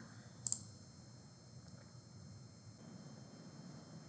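A single computer mouse click about half a second in, then near silence.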